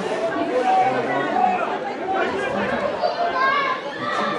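Overlapping chatter of many voices, several people talking at once with no one voice standing out: sideline spectators at a rugby league match.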